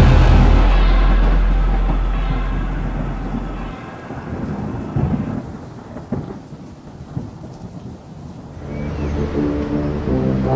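Music dies away into a low thunder rumble with rain and a few sharp cracks. New music with brass comes in near the end.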